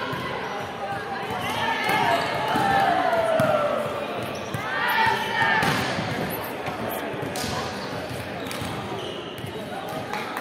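Volleyball players' voices shouting and calling out in a large sports hall, with loud calls about two and five seconds in. Short thuds of a volleyball hitting the wooden court floor run underneath.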